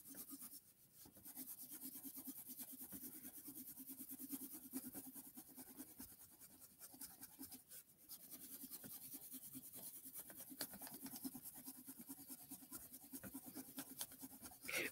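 Prismacolor magenta (PC930) colored pencil shading back and forth on notebook paper: a faint, quick scratching of about four strokes a second, with a short lull about six seconds in.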